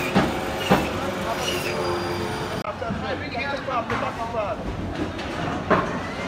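Butcher's meat band saw running with a steady hum and a couple of knocks. About two and a half seconds in there is a sudden cut to the chatter and bustle of a busy market crowd, with a few knocks.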